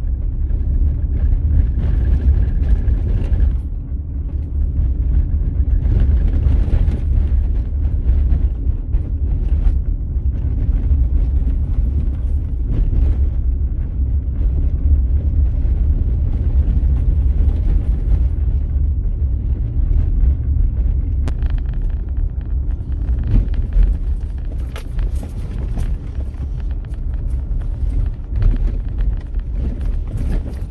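A vehicle driving on a gravel road: a steady low rumble of engine and tyres on the gravel, with scattered small clicks, more of them near the end.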